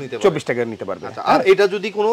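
A man talking steadily in Bengali.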